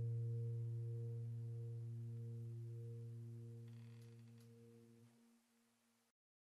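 The last held low note of the background piano music, a steady tone with a few overtones, slowly fading out and dying away about five seconds in.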